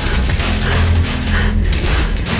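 A woman whimpering in fear over a low, steady droning film score.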